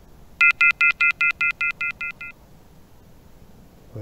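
A rapid run of about a dozen electronic beeps from a ghost-hunting phone app, each a chord of high tones. They come about six a second and fade away over two seconds.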